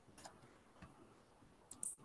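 Near silence over a video call, broken by a few faint clicks, with the strongest pair near the end.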